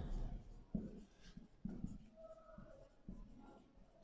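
Marker pen writing on a whiteboard: a few faint, short strokes, with a brief squeak about midway.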